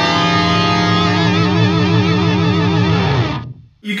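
Electric guitar played through an Eventide H9 pitch-shift effect with its feedback turned up: a held note that quickly fills with many pitched layers, then warbles and wavers, and cuts off suddenly about three and a half seconds in.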